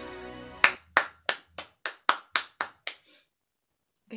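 The last of a sung ballad fades out, then one person claps their hands about nine times, roughly three claps a second, the first loudest and the rest getting quieter.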